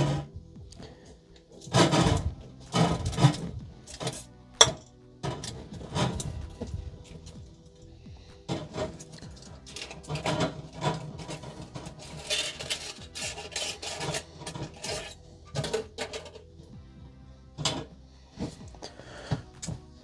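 Aluminium foil crinkling as it is peeled off mason jars, among irregular knocks of jars and lids and the rustle of a plastic bag being handled.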